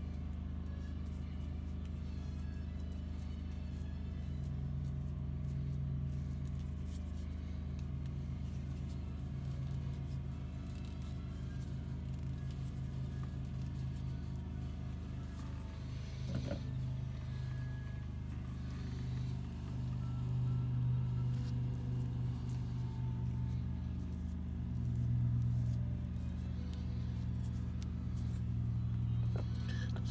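A machine running steadily with a low hum, swelling a little in level a few times.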